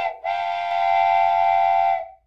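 Battery-operated toy train's electronic whistle sound: a short blip, then one steady whistle tone held for nearly two seconds.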